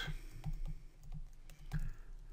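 Soft, irregular tapping and clicking of a pen input device as words are handwritten on a computer screen, several light knocks a second, over a steady low electrical hum.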